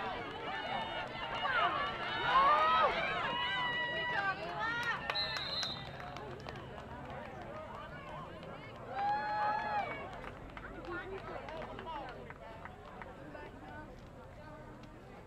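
Football spectators and sideline voices shouting and cheering during a play, many voices at once, loudest two to three seconds in. A short referee's whistle blast comes about five seconds in, and another loud shout near ten seconds.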